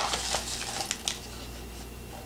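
Hands working the plastic lid of a microwave pasta cup: a few faint clicks and crinkles in the first second, then only a low steady hum.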